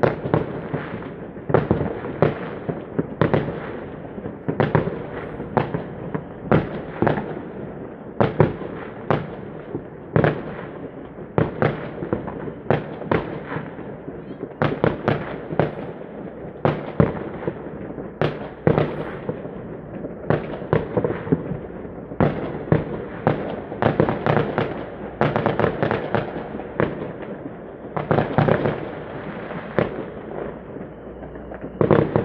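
Many fireworks and firecrackers going off at once across the town: a dense, irregular string of bangs and cracks, often several a second, over a continuous background of further explosions.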